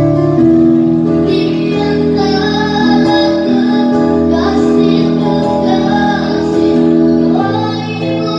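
A boy singing a slow ballad into a microphone, holding long notes, with unplugged guitar and keyboard accompaniment.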